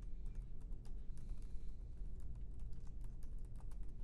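Typing on a computer keyboard: a quick, uneven run of keystrokes as a short phrase is typed.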